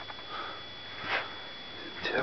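A person sniffing once, a short breathy sniff about a second in, over a steady background hiss.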